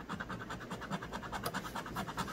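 Scratch-off coating being rubbed off a paper lottery scratch ticket in rapid, even back-and-forth strokes.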